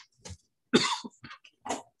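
A person coughing: one sharp cough about a second in, then a smaller cough or throat-clearing sound a second later.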